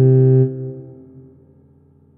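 A low, synthetic-sounding tuba note from computer playback, held steady and then released about half a second in. Its tail fades away over the next second and a half.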